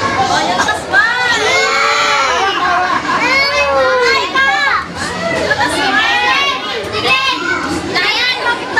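A group of children's voices calling out and chattering together, with two long drawn-out high cries that rise and fall, one about a second in and one about halfway through.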